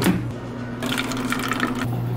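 Single-serve pod coffee maker starting a brew: a click at the start, then a steady hum from the machine and coffee running into a foam cup.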